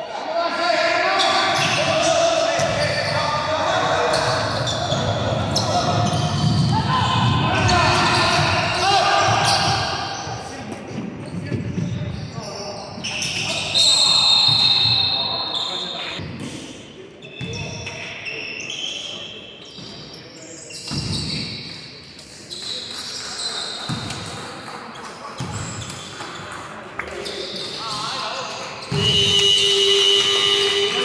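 Basketball bouncing on a hardwood gym floor during free throws and play, with players' and spectators' voices echoing in the large hall. About 14 s in, a high steady tone sounds for about two seconds.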